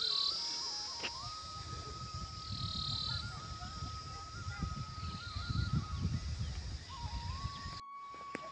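Insects buzzing at a high pitch, swelling and falling away three times, over a faint thin note that shifts up and down in small steps like a distant melody. A low rumble runs underneath.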